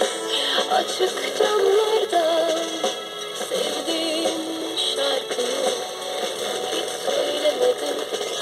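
Music with a singing voice from an FM broadcast on 97.2 MHz, received on a TEF6686 receiver. The signal is weak, about 15 dBµV with roughly 15 dB signal-to-noise.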